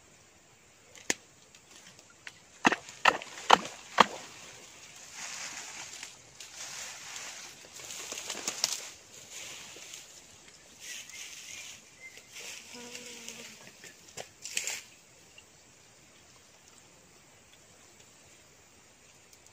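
Rustling of dry leaves and twigs as hands work through leaf litter and shallow muddy water, with several sharp clicks between about one and four seconds in.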